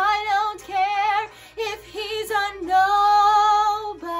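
A woman singing a show tune solo, holding long notes with a wide vibrato between short, quick vocal phrases.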